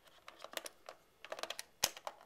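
Clear plastic blister tray clicking and crackling in irregular snaps as hands pry an action figure out of it, with one sharper snap near the end.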